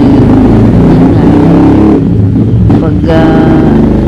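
A motor engine running steadily and loudly close by, a dense low drone, with a short bit of speech over it near the end.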